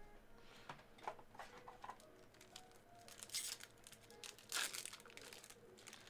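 Faint crinkling and tearing of a trading-card pack wrapper handled and opened by hand, in a few short rustles; the loudest come about three and a half and four and a half seconds in.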